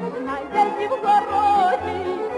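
Ukrainian folk song: a woman's voice sings a wavering, held melody with vibrato over a folk ensemble accompaniment with a repeating bass line.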